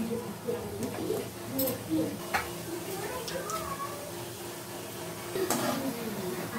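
Hot oil bubbling and sizzling in a pan as gulab jamun dough balls deep-fry, with a few light clicks and faint voices in the background.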